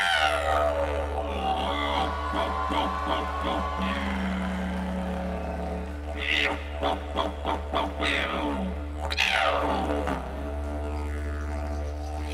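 Didgeridoo solo: a steady low drone that begins abruptly, with the overtones swept up and down by the player's mouth and voice, and a run of quick rhythmic breath pulses about halfway through.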